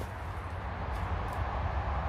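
Steady distant traffic noise from a busy dual carriageway, an even wash of sound with no single passing vehicle standing out.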